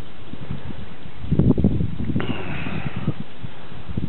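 Strong wind buffeting the microphone and rustling the half-submerged willow bushes, with a brief louder burst about a second and a half in.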